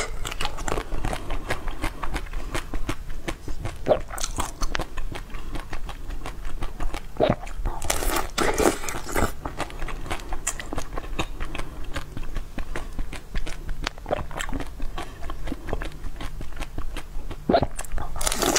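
A person biting and chewing crunchy food close to the microphone: a dense run of crisp cracks and crunches, with louder bites about four seconds in and again around eight to nine seconds.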